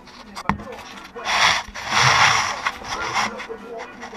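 Camera being handled and set down on a workbench, close to the microphone: a sharp knock about half a second in, then two loud spells of scraping and rubbing noise.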